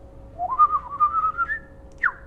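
A person whistling a few short wavering notes, the pitch climbing and ending on a higher held note.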